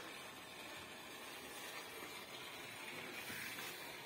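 Faint steady background noise with no distinct events: quiet ambience.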